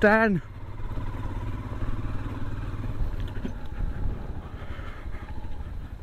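Motorcycle engine running steadily at low road speed, a low rumble with faint road and wind noise.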